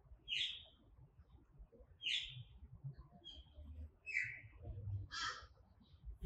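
A bird calling in the trees: a series of short, scratchy calls about a second apart, the loudest near the start and about two seconds in.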